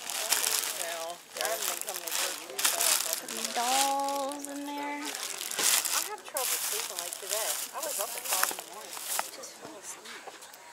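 Thin clear plastic bag crinkling in a series of crackles as a hand grabs and handles it, over people talking.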